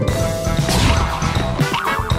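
Upbeat background music with busy percussion: many sharp drum hits over held notes.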